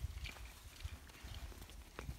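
Quiet outdoor background: a low rumble with a few faint, soft taps.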